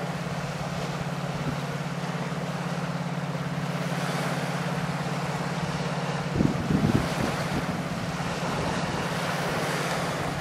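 Low, steady throbbing drone of a passing cargo ship's engine, over the wash of choppy water and wind. A gust buffets the microphone with a loud rumble about six and a half seconds in.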